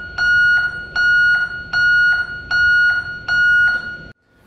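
Pollak adjustable backup alarm, set to its highest 112 dB setting, beeping: a loud, steady high-pitched tone pulsing on and off at a little over one beep a second, about five beeps.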